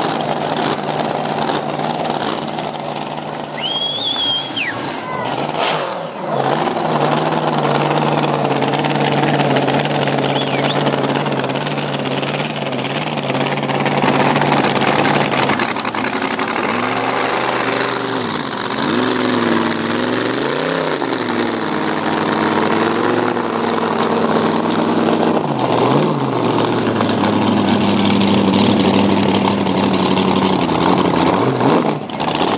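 Supercharged, alcohol-injected V8 of a drag boat idling with a steady, even note, then blipped up and down in a string of short revs through the middle, settling to a higher, steady pitch near the end.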